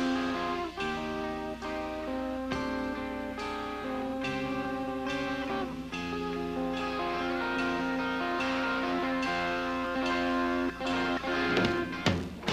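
Live rock band playing a slow, clean picked guitar arpeggio, its notes ringing over one another, in a steady concert sound.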